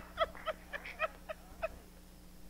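A woman laughing: a string of short "ha" syllables, about four a second, growing fainter and dying away before the end.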